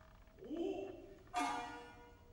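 A shamisen plucked once about halfway through: a sharp, ringing note that fades away. Just before it comes a short rising call from a voice.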